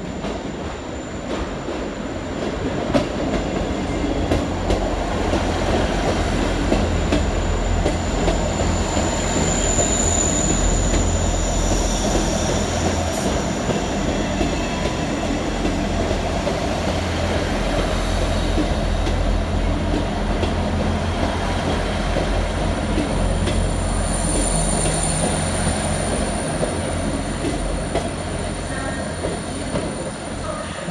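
Diesel multiple-unit trains running through a station: a steady low engine and wheel rumble throughout, with thin high squeals about ten seconds in and again later.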